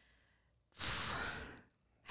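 A person's audible sigh, a single breathy exhale into a close microphone lasting about a second, starting near the middle.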